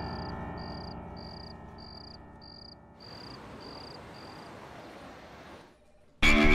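Background score: a held, many-toned chord fading away under a short high beep that repeats about two and a half times a second. About three seconds in, a hissing swell comes in and drops away near the end.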